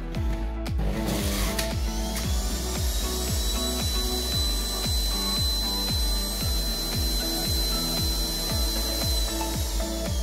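Centrifugal juicer motor starting about a second in and running with a steady high whine as carrots are pressed down the feed tube and shredded with a grinding, rasping noise; the whine begins to drop near the end. Background music with a steady beat plays throughout.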